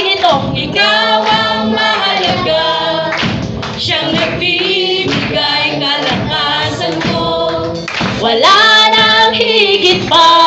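Live worship band playing a Tagalog praise song: a woman sings the lead into a microphone over drums and electric guitars, with steady low bass notes underneath.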